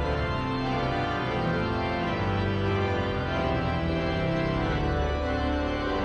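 Pipe organ playing a hymn in full sustained chords that change about every second, at a steady level.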